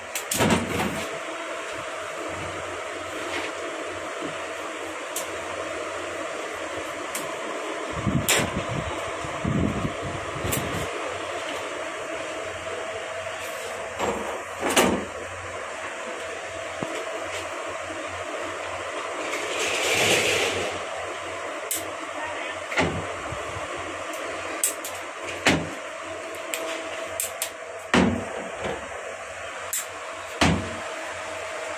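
Lead-acid battery plates being handled and stacked, with scattered sharp clacks and knocks over a steady workshop hum. A short hiss comes about two-thirds of the way through.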